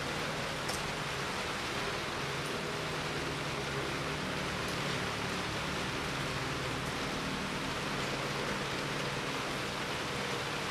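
Steady background hiss with a faint low hum, with no distinct events: room noise.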